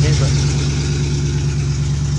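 1966 Ford Mustang's engine running steadily, a low, even drone that does not rise or fall.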